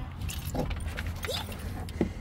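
Scattered light clicks and rattles of handling and fittings inside a cargo van's cab as someone gets in, over a low steady rumble.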